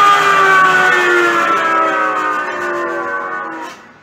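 The final chord of a blues song on an archtop electric guitar, several notes held and ringing out with their pitch sagging slightly as they fade. The chord is damped suddenly near the end.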